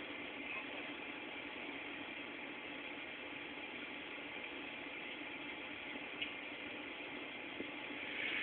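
Steady faint background hiss with a low hum, with two small ticks near the end.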